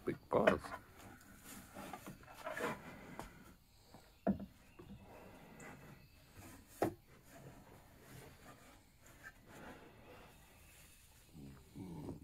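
Young black bear's paws and claws on a wooden porch deck and railing: soft scraping and shuffling, with a few sharp knocks on the boards about four and seven seconds in.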